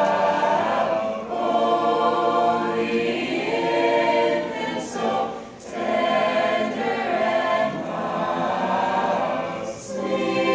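Mixed-voice high-school choir singing a Christmas song in harmony, in long phrases with brief breaks about every four seconds.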